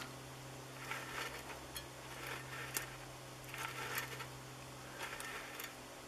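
Faint light clicks and scrapes from the hinged cowl flaps of a giant-scale model Corsair cowl as they are worked open and closed by hand with a thin push rod, coming irregularly about once a second. A steady low hum runs underneath.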